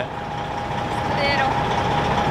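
A semi truck running close by: a steady rumble with one steady whine held over it, growing slightly louder. A brief faint voice comes in about a second in.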